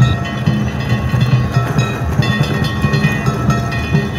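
Danjiri festival music: taiko drums beaten in a fast, steady rhythm, with small hand gongs (kane) ringing over them.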